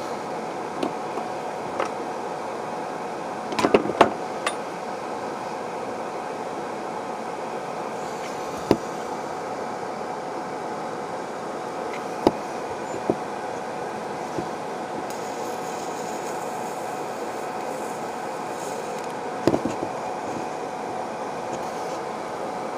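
A steady background hum with a handful of short, sharp clicks and knocks from handling a USB-rechargeable electric arc lighter and a candle stub while the arc is held to the wick. A faint high hiss comes in for a few seconds past the middle.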